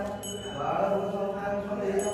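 Devotional mantra chanting: a voice holding long, steady notes.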